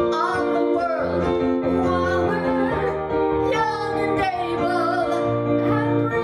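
A woman singing with piano accompaniment, her held notes wavering with vibrato over sustained piano chords.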